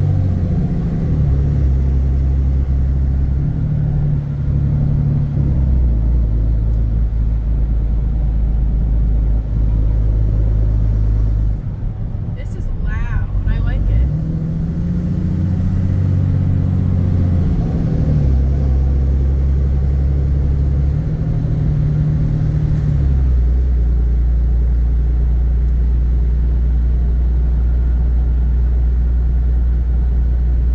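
Ram pickup's Cummins inline-six turbo-diesel with a straight-piped exhaust, heard from inside the cab while driving: a low drone that steps up and down in pitch several times, with a short lull about twelve seconds in.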